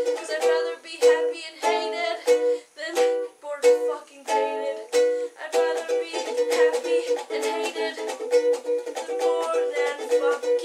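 Ukulele strummed in a steady rhythm of chords, played solo without singing. The strumming thins out with a brief gap about three seconds in, then runs on evenly.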